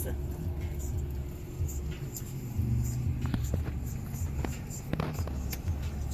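Low steady rumble of a car heard from inside its cabin, with a few light clicks of a plastic fork against a foam takeout container partway through.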